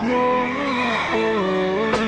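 Slowed-down, pitched-down electronic dance track in a break without drums: sustained tones that glide from note to note.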